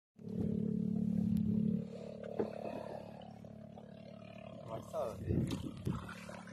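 A small boat's motor running with a steady low hum, dropping sharply in level a little under two seconds in and carrying on more faintly. A few sharp knocks come near the end.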